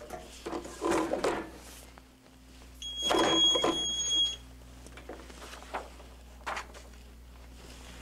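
Clamshell heat press at work: handling noises about a second in, then from about three seconds in a clunk of the press being opened together with a high steady electronic beep, the press timer signalling that the pressing time is up.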